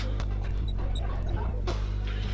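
Steady low electrical hum with a few faint taps and small high squeaks of a marker writing on a glass lightboard.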